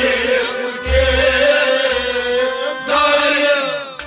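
Male voice singing a Kashmiri Sufi song, holding a long ornamented, wavering line over a steady instrumental drone, with low beats about a second in and again about two seconds in.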